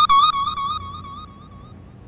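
Background score: a single held high note with a slight waver in pitch, fading away over about a second and a half.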